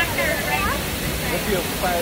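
Steady rush of a waterfall, with people's voices rising and falling over it in the first second and again near the end.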